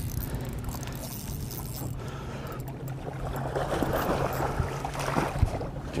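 Hooked largemouth bass splashing and swirling at the water's surface beside the boat, the splashing strongest in the second half. Underneath runs a steady low hum from the boat's motor.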